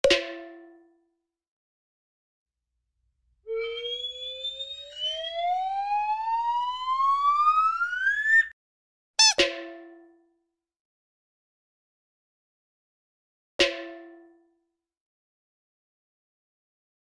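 Edited-in sound effects over dead silence. A bell-like ding at the start is followed by a rising whistle glide lasting about five seconds. Then comes a ding with a quick downward swoop, and one more ding near the end.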